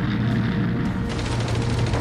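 Battle sound effects of rapid gunfire crackle over a low rumble, mixed with background music; the crackle thickens about halfway through.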